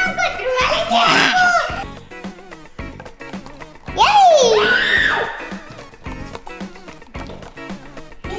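Young girls' voices, laughing and exclaiming, with one loud high squeal about four seconds in that slides down and back up in pitch, over background music with a steady beat.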